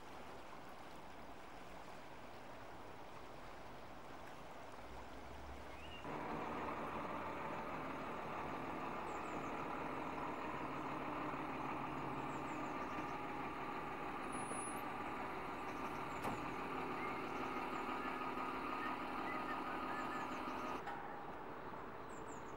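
Steady rushing noise of flowing floodwater, which about six seconds in gives way to an engine running steadily at idle, a hum with several fixed tones, with faint bird chirps over it.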